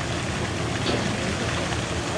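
Steady wash of water noise as two African elephants wrestle and slosh about in a pool.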